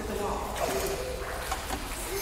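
Indistinct voices over the light splashing of a child swimming in a pool.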